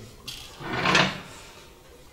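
Sheets of paper rustling close to a microphone as they are handled, with a brief crackle and then one loud swell of rustling about halfway through.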